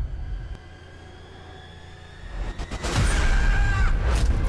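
Horror-trailer score and sound design: a quiet low drone, then a swell that turns loud about three seconds in, with a high held tone near the end.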